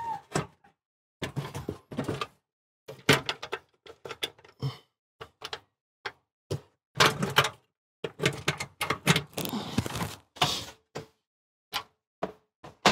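A Suburban SDS2 drop-in glass cooktop with stainless trim being seated and shifted by hand in its countertop cutout: a string of irregular knocks and thunks, with a few short scraping stretches.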